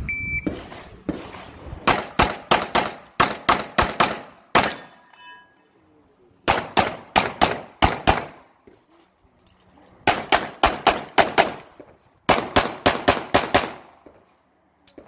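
Shot timer beep, then a CZ SP-01 Shadow pistol fired in fast strings of shots, about four or five a second. It fires in four bursts with short pauses between them as the shooter moves through an IPSC stage.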